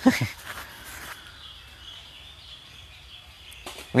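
A man's word cuts off just after the start, leaving a pause with only faint background noise and a faint steady high tone until his speech resumes at the very end.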